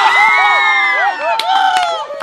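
A group of teenagers bursting into loud cheering and laughter together, several high voices held long and overlapping.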